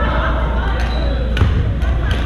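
Voices echoing in a large gym hall over a steady low rumble, with a few sharp hits from badminton play, the loudest about a second and a half in.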